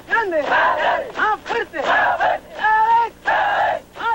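A unit of soldiers chanting a military running cadence in unison as they run in formation: loud shouted phrases in a steady rhythm, with the words "every time... now, now, now... stronger, stronger".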